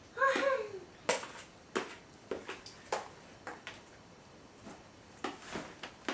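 A short voice near the start, then a string of sharp, irregular clicks about every half second to second over quiet room tone.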